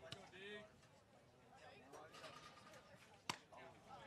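Faint, distant voices, with one sharp pop about three seconds in: a pitched baseball smacking into the catcher's mitt.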